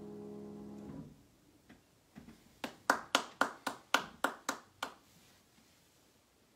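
A sustained grand piano chord rings and is cut off about a second in as the keys are released. Then comes a quick run of about nine sharp clicks, roughly four a second, louder than the chord.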